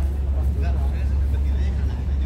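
A steady low rumble with faint voices talking in the background.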